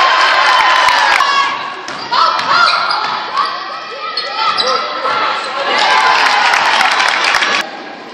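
Basketball bouncing on a gym floor during live play, among players' and spectators' voices, with the echo of a large gym. The whole sound drops abruptly near the end.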